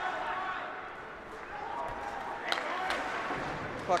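Ice rink sounds during live play: indistinct voices calling out in the rink, and one sharp clack of hockey stick and puck about two and a half seconds in.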